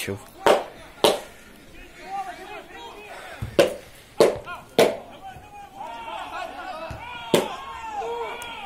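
Shouts and calls from players on an open football pitch. Six sharp knocks cut through them at irregular intervals and are the loudest sounds.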